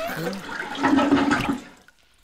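A toilet flushing, the rush of water dying away near the end.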